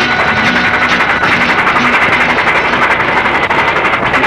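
The song's music fades out under a vehicle engine running steadily with a rapid, even pulse.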